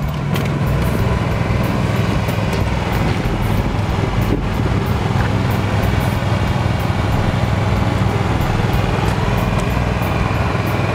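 A vehicle engine idling steadily, with a low, even hum.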